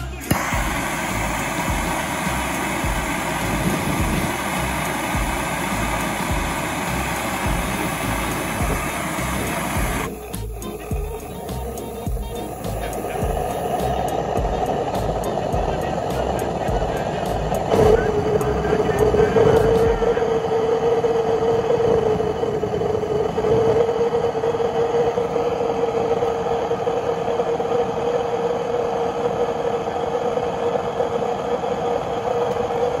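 Background music with a steady beat fills the first two-thirds. A little past halfway, a steady whine and rushing noise start up: a hair-dryer jet engine running with a propane flame burning in its flame tube. It carries on alone once the music stops.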